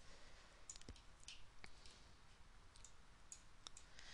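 Faint computer mouse clicks, scattered irregularly over a near-silent room tone.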